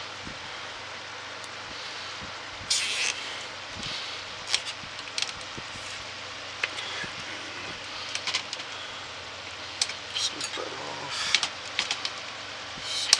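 Nylon zip tie pulled tight through its ratchet, a short rasping burst of rapid clicks about three seconds in, followed by scattered small clicks and taps from handling the tie and wiring on the box fan's frame.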